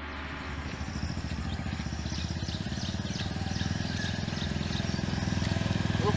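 Motorcycle engine running as the bike rides up, its steady low firing pulse growing louder as it approaches. Short high chirps sound faintly in the background during the middle seconds.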